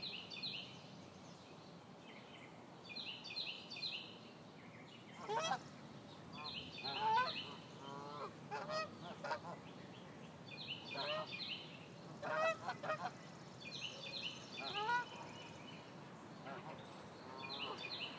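Canada geese honking, a loose series of calls from about five seconds in until about fifteen seconds in. Under them a songbird repeats a short high phrase every three to four seconds.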